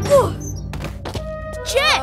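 Cartoon crash-landing sound effects: a short falling slide in pitch and a thunk, followed by a few light knocks, over background music. A brief rising vocal exclamation comes near the end.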